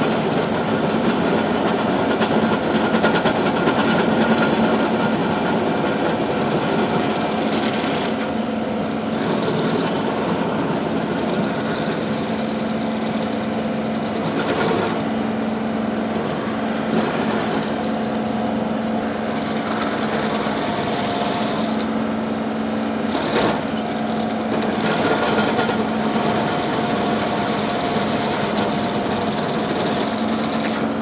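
Baumalight 1P24 PTO-driven stump grinder cutting into a hard ash stump, with the John Deere 2038R's diesel engine running steadily under load beneath the grinding. One sharp knock comes about two-thirds of the way through.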